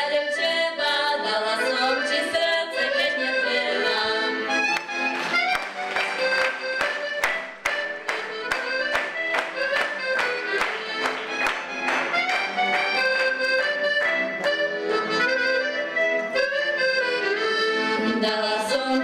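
Slovak folk band led by an accordion playing an instrumental passage, with rhythmic chords struck about two or three times a second through the middle.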